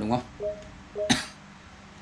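Two short two-note beeps from a Samsung LCD TV's on-screen menu as the selection steps through the self-diagnosis menu, with a sharp click just after the second beep.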